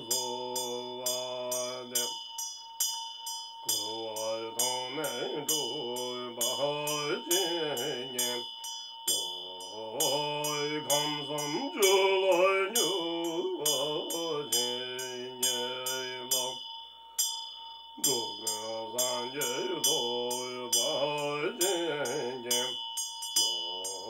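A man chanting a Tibetan Buddhist mantra in a low voice, in long held phrases broken by three short pauses, while ringing a Tibetan hand bell (drilbu) that sounds with rapid, regular strikes and a steady high ring throughout.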